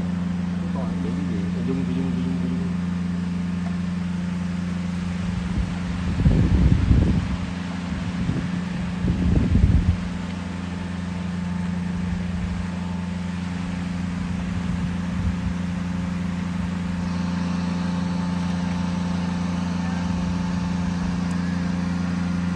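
Steady low drone of a running machine, with two louder low rumbles about six and nine seconds in.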